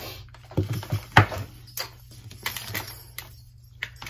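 Light clicks and knocks of a mini hot glue gun and its cord being handled and set down on a tabletop while it is connected, with the loudest knock a little over a second in.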